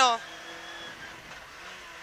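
Peugeot 106 N1 rally car's engine running steadily at speed, heard faintly inside the cabin beneath the end of a co-driver's pace note.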